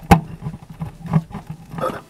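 A 15-inch Focus Acoustics subwoofer driver wired straight to 230 V mains power: a sharp crack, then a string of irregular knocks and crackles over a low mains hum, which cuts off at the end. These are the sounds of the overdriven driver failing, its cone cracking and suspension tearing.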